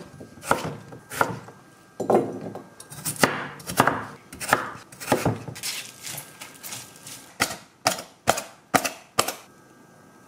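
Chef's knife cutting through peeled raw potatoes and knocking on a wooden cutting board, in uneven strokes about one or two a second. Near the end comes a quicker run of about six sharp clicks or knocks.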